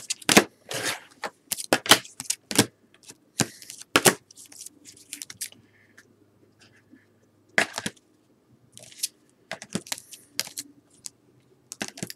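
Stack of cardboard baseball trading cards being handled and thumbed through, giving irregular sharp snaps and flicks as the cards are riffled and squared up. There is a short lull in the middle.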